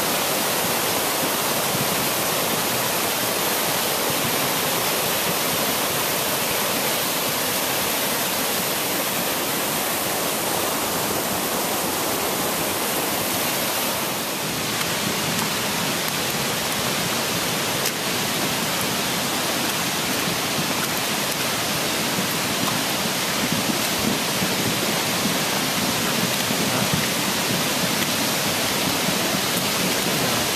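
A woodland stream in full flood: fast, muddy brown floodwater rushing in a loud, steady wash of noise.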